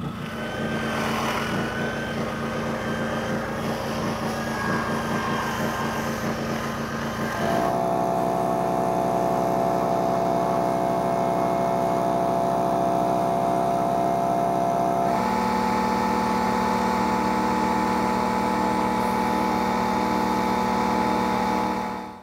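Stihl chainsaw running steadily at high revs, its pitch holding level. The sound changes abruptly twice, about a third and two thirds of the way through, as one stretch of cutting gives way to another.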